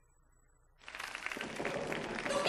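Near silence, then, just under a second in, audience applause starts suddenly, a dense patter of many hands clapping, with children's voices mixed in.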